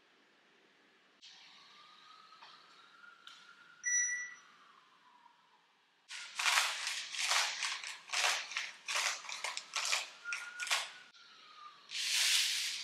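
A single short electronic beep from a digital kitchen scale. Then granulated sugar is poured in quick spurts from a glass jar into a bowl on the scale: about ten sharp, uneven rattling pours over five seconds.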